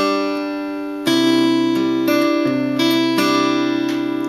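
Acoustic guitar played fingerstyle, slowly picking a Travis-style pattern: about six plucked notes and two-string pinches, each left to ring, with the open high E string carrying the melody.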